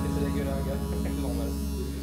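Electric tattoo machine buzzing steadily as the needle works on skin.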